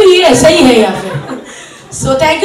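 Chuckling laughter mixed with talk, dying down over the second half.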